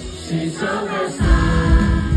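Live hip-hop music played over a concert PA, heard from the audience, with vocals. A heavy bass beat comes in just over a second in.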